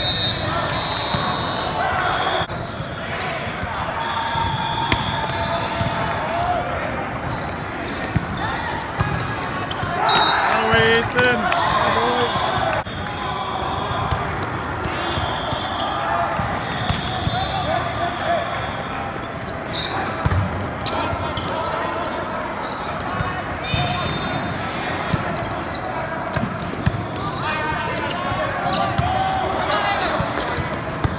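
Din of a large hall during volleyball play: many voices and shouts from players and spectators, with repeated sharp smacks of volleyballs being hit and bouncing. The shouting is loudest about ten seconds in and again near the end.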